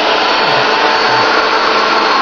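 Steady whir of a handheld UV curing lamp's cooling fan, running while the lamp cures a freshly applied bathtub-refinishing coating, with a few faint steady tones in the noise.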